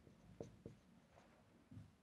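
Faint ticks and strokes of a marker writing on a whiteboard, a few short taps mostly in the first second.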